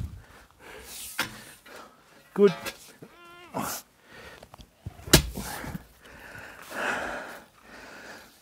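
A long-handled garden tool striking the soil of a garden bed: one sharp, loud thud about five seconds in, with fainter knocks before it and a rustle of soil and leaves near the end.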